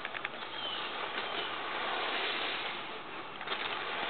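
Outdoor ambience: a steady even hiss with a few light clicks right at the start and again near the end, and a faint bird chirp about half a second in.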